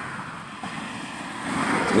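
Steady rushing background noise with no distinct events, swelling toward the end.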